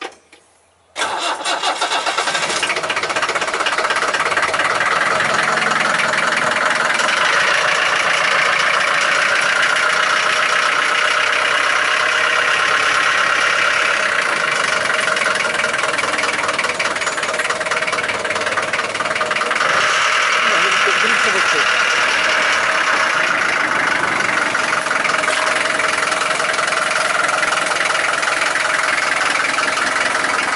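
The reconditioned engine of a 1982 Land Rover Series III 88 starts about a second in and then runs steadily.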